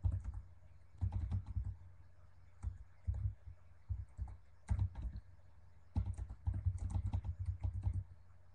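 Typing on a computer keyboard: short runs of keystrokes separated by brief pauses, with a dense run of keystrokes over the last two seconds.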